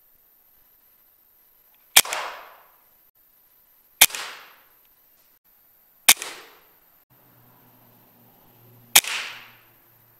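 Four shots from a PCP air rifle, about two seconds apart with a longer gap before the last. Each is a sharp crack followed by a short fading tail.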